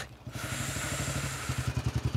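Motorcycle engine running with an even low thumping, about ten beats a second, which grows louder about three-quarters of the way through. A steady hiss sits over the middle of it.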